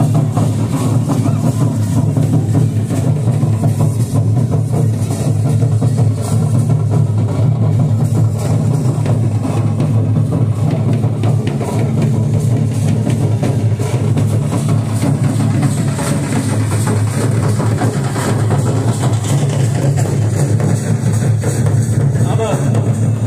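Loud drum-led folk dance music, the beat carried by heavy drums, playing without a break.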